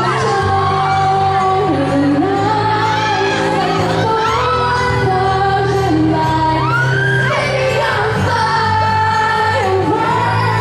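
A woman singing a pop song live into a microphone over instrumental accompaniment, amplified through a PA system.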